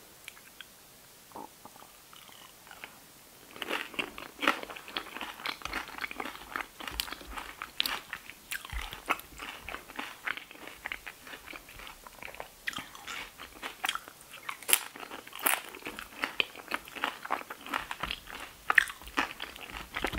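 Close-miked crunching and chewing of nacho tortilla chips. A few faint clicks come first, then dense, uneven crisp crunches from about three and a half seconds in.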